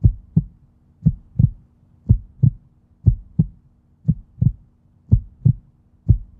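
Heartbeat sound effect: paired low lub-dub thumps, about one pair a second, over a faint steady low hum.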